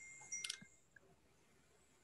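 A few faint clicks with a brief thin high tone in the first half second, then near silence.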